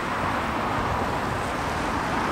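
Steady outdoor background noise of road traffic, an even hiss with no distinct events.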